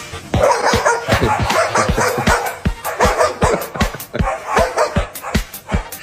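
Dog barking rapidly and repeatedly at another dog through a glass door, over background music with a steady beat.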